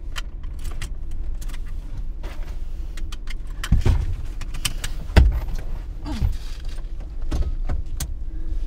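Small metallic clicks and jangles of seatbelt buckle hardware and a purse chain being handled inside a car, over the steady low hum of the idling engine. Three heavier dull thumps come near the middle, the loudest just past halfway.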